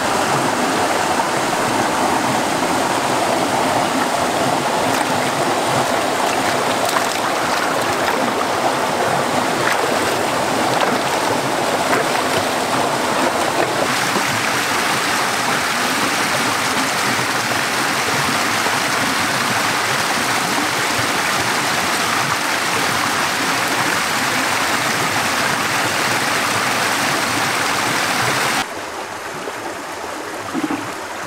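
Rushing stream water pouring over rocks and small cascades, a loud, steady wash. It drops suddenly to a softer flow near the end.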